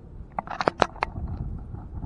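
A quick run of light clicks and knocks about half a second to a second in, over a low steady rumble.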